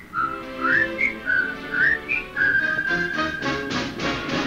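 A whistled tune over a musical backing: a run of short, mostly upward-sliding whistled notes, then one long held note from a little past halfway to near the end.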